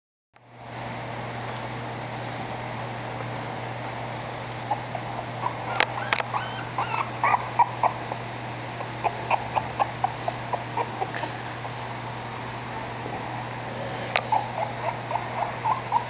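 Newborn English Bulldog puppy whimpering in short, high squeaks. The squeaks start about five seconds in and come in runs over a steady low hum.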